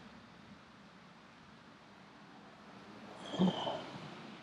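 Quiet background noise, with one brief, faint sound a little past three seconds in.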